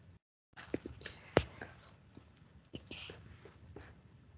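Faint scattered clicks and soft rustling on an open microphone that cuts out to dead silence at moments. One sharper click comes about a second and a half in.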